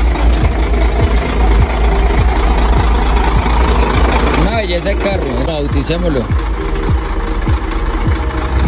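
Chevrolet C60 truck engine idling with a steady low rumble, with voices over it about halfway through.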